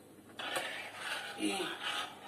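A metal spoon stirring oats cooking in milk in a small stainless steel pot, a rough scraping that starts about half a second in.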